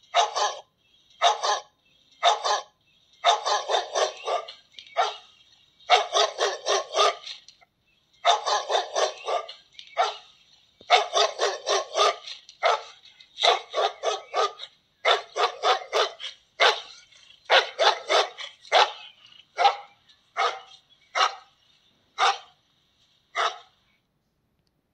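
Recorded dog barking played through a small speaker by a DFPlayer Mini MP3 module, the sound of the PIR motion alarm going off. The barks come in quick runs of several with short gaps, thin with no deep tones, and stop just before the end.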